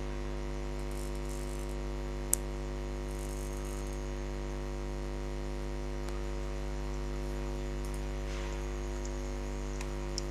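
Steady electrical mains hum with a buzz of evenly spaced overtones, picked up in the recording chain, with a single sharp click a little over two seconds in.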